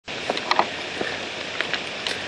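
Steady outdoor hiss with a few light clicks and taps from a handheld camera being moved.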